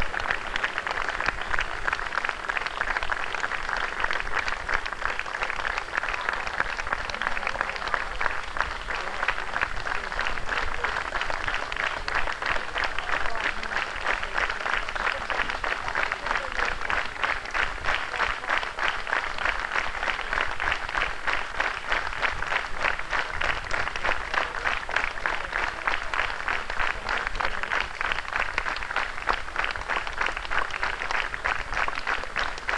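Audience applauding: many hands clapping in a dense, steady stream.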